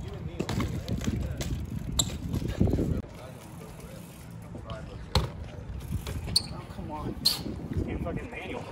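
BMX bike tyres rolling on a concrete sidewalk during wheelie tricks, a steady low rumble broken by four sharp knocks as the wheels drop onto the pavement.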